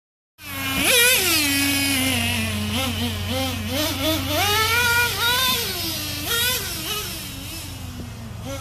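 Nitro RC truck's Traxxas TRX 2.5 two-stroke glow engine revving as the truck is driven, its pitch rising and falling again and again with the throttle. It starts about half a second in.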